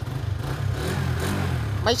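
Suzuki GSX-R150's single-cylinder engine starting up right at the beginning and then idling steadily, very smooth.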